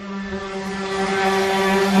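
A power tool's motor running steadily with a hum and a rising hiss that grows louder over the two seconds.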